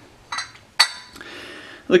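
A glass cup clinks once against its glass saucer as it is handled, with a short bright ring about a second in. A softer knock comes just before, and a faint scrape of glass follows.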